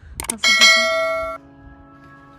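A bright bell-like chime rings out about half a second in, full of high overtones, and is cut off sharply about a second later, leaving a quieter held note.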